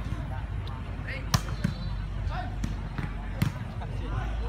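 Sharp smacks of a volleyball being struck by hand during a rally, the two loudest about two seconds apart with lighter hits between, over scattered voices.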